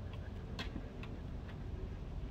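Light clicks, about two a second, the loudest a little past the half-second mark, over a steady low rumble.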